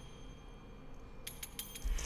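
Sampled finger cymbals in playback: a quick run of about five light metallic clinks a little past a second in, after a low string chord has died away. A low thump follows just before the end.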